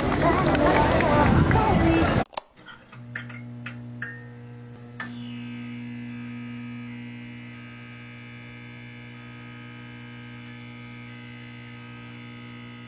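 Outdoor crowd chatter and voices for about two seconds, then a cut to an electric neon-sign sound effect: several sharp flickering clicks as the sign switches on, settling into a steady electrical hum.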